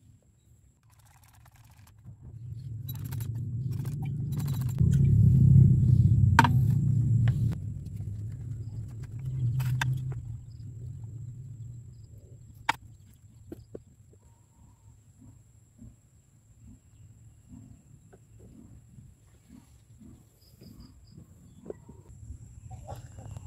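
Yellow acid solution poured from a glass beaker into a filter funnel on a glass flask: a low rushing pour that builds, is loudest a few seconds in and fades out after about ten seconds, with a few light glass clinks. Then faint small drips as the solution runs through the filter.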